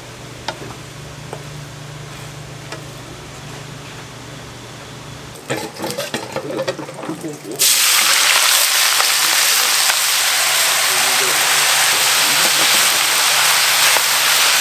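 Wooden spatula ticking against a pan over a low steady hum, then clattering; about seven and a half seconds in, a loud steady sizzle starts suddenly as greens are tipped into a hot, oiled frying pan.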